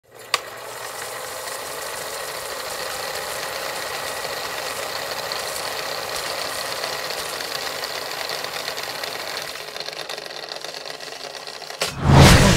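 Film projector sound effect: a steady mechanical clatter with film crackle, starting with a click and fading out over the last couple of seconds.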